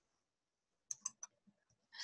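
Near silence broken by three faint, short clicks close together about a second in.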